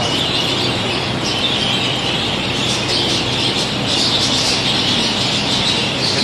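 A large flock of budgerigars chattering and chirping continuously in an indoor aviary, over the steady hum of the wall extractor fans.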